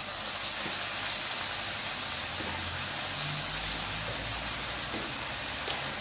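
Beef and shredded vegetables sizzling steadily in a hot wok, with soy sauce just poured in hissing on the hot pan.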